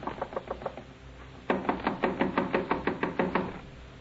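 Radio-drama sound effect of knocking on a door. A short run of lighter knocks comes first; after a brief pause, a longer and louder run of rapid knocks follows, about six or seven a second.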